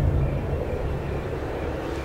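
Low, steady rumbling drone of an ominous soundtrack ambience, easing slightly in level.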